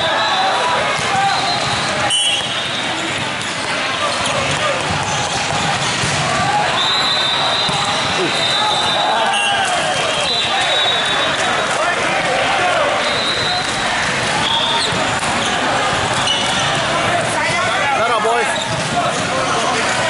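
Busy, echoing indoor volleyball hall: many overlapping voices, with volleyballs bouncing and being struck now and then, and several high steady tones about a second long.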